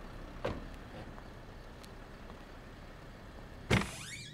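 A low, steady background with a faint click about half a second in, then a sharp, loud click near the end: a door latch or lock being worked as the door is opened.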